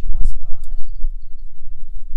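Wind rumbling on the microphone, with a sharp knock about a quarter second in and a short high chirp just before the one-second mark, from a small handheld cable stripper and wire being handled.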